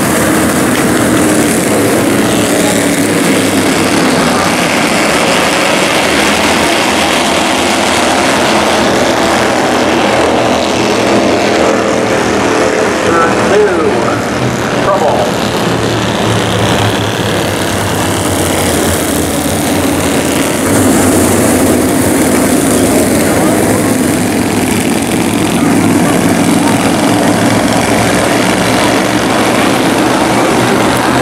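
A pack of Bandolero race cars with small single-cylinder Briggs & Stratton engines racing around a paved oval. It is a loud, steady mix of engine drone, with pitch that rises and falls as cars pass about midway through.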